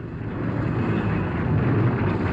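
Motorcycle engines, a dense rumble that grows louder over the two seconds.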